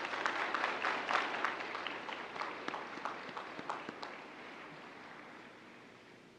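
Audience applauding: a round of clapping that is strongest at first and dies away over the last couple of seconds.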